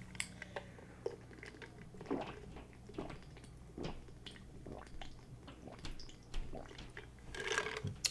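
A person drinking from an insulated tumbler: faint sips, swallows and wet mouth smacks, a scattered string of soft clicks that grows a little louder near the end.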